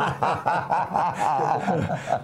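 Two men laughing together, a quick run of short chuckles.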